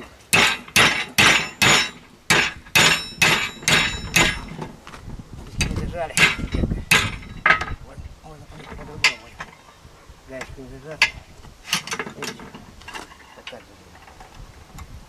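Hammer blows on a steel rod about 8 mm thick clamped in a bench vise, bending it: a quick run of ringing metal strikes, about two a second, over the first four seconds. After that come slower, scattered knocks.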